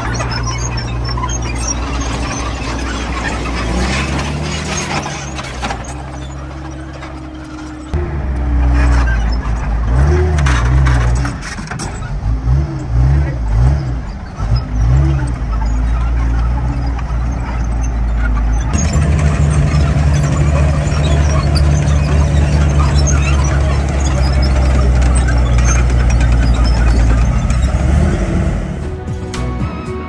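FV4005 tank's Rolls-Royce Meteor V12 engine running as the tank drives on its tracks, with the engine revving up and down in quick swells midway, then running steadily, along with track squeal.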